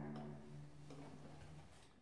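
The last chord of a bowed string ensemble dying away: low held string notes fade out, with a few faint clicks, and the sound drops to silence at the very end.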